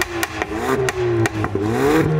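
Ford Focus ST's 2.3-litre turbocharged four-cylinder heard at the exhaust. Its note sags and then climbs again near the end, broken by about half a dozen sharp pops and crackles from the twin tailpipes, the popping that comes with upshifts in its sport modes.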